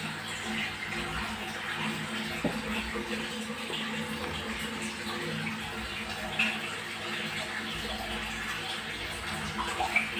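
Water running and splashing steadily in a fish tank, with a faint steady low hum beneath it.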